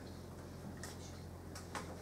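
Quiet room tone with a steady low electrical hum, broken by a few faint, irregular clicks and rustles of paper being handled at the table.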